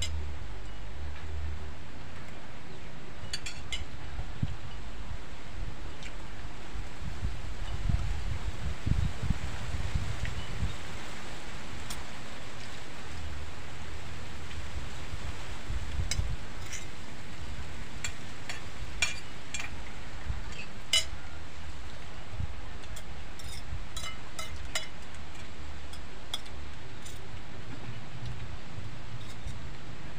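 Metal spoons clinking and scraping against plates as people eat, in scattered short clicks over a steady low background noise.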